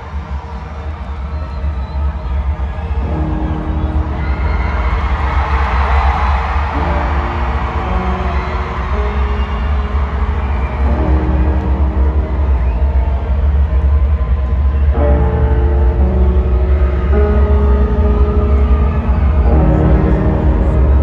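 Live concert music over an arena sound system: a slow instrumental of long held chords that change every few seconds over a heavy, steady bass, getting louder throughout. A crowd's cheering swells up in the first half.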